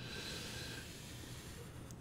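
Felt-tip marker drawing a long line across paper: a faint, soft scratching hiss.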